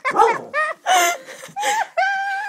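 A girl's high-pitched laughter in three short squealing bursts.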